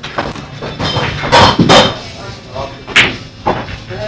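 Indistinct voices with a single sharp click about three seconds in.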